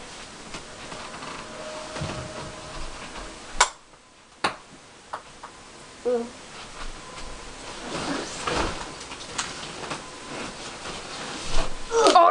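Small plastic Cuponk ball bouncing: two sharp clicks about a second apart a few seconds in, then a couple of fainter taps. The clicks come against a rustle of movement on the bedding.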